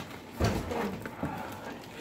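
Cardboard box with the pool's filter pump and cords inside being handled and shifted, with a thump about half a second in and rustling and light knocks after.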